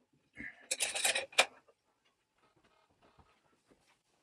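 A short burst of clattering and metallic clicks about half a second in, lasting about a second, then a few faint knocks: handling noise as a homemade banjo and a wrench are picked up and carried.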